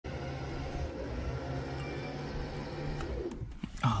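Trailer-mounted electric winch running steadily as it pulls an SUV up onto a flatbed trailer, with a steady hum, stopping about three and a half seconds in.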